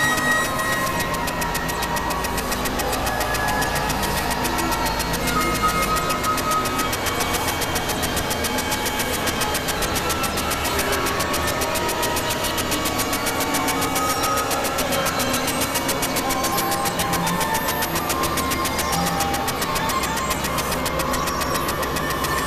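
Experimental electronic noise music from synthesizers: a dense, steady, machine-like texture with a fast even flutter and scattered short high tones. A deep low drone underneath drops out about six seconds in.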